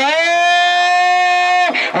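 A man's voice holding one long, loud vowel for about a second and a half, sliding up at the start and falling away near the end: the futsal commentator's drawn-out excited cry during an attack on goal.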